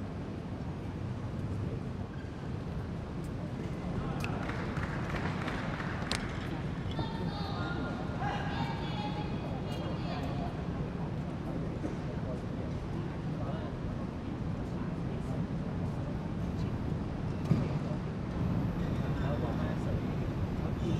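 Steady murmur of a crowd in an indoor sports arena, with faint indistinct voices talking in the middle.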